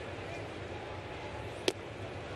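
Steady ballpark crowd murmur, with a single sharp pop near the end as the pitch smacks into the catcher's mitt.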